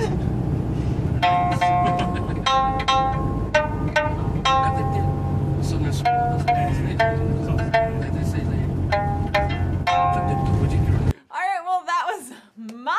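Okinawan sanshin (three-string snakeskin lute) plucked one note at a time by a beginner, single notes and short runs with gaps between, over a steady low rumble inside a van. The playing and rumble cut off shortly before the end.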